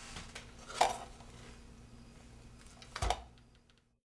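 Two sharp clicks, the first about a second in and the second, with a low thud, at about three seconds, over a faint steady hum.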